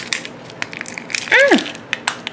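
Crinkly plastic wrappers rustling and small plastic containers clicking as Shopkins blind packs are handled and opened. A short falling 'oh' from a voice comes about one and a half seconds in.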